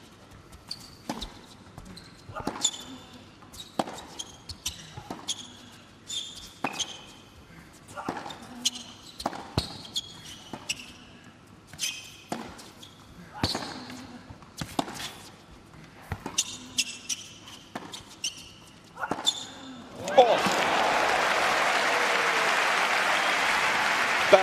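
Tennis rally: racket strikes and ball bounces, sharp hits about once a second. About twenty seconds in the rally ends and the crowd breaks into loud applause and cheering.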